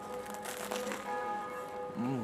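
Bells ringing faintly, several steady pitched tones sounding on and off together.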